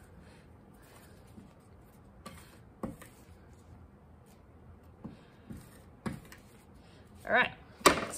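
Palette knife working stiff etching ink on an inking slab: faint, soft scrapes with a few light taps spread out over several seconds as the ink is loosened up.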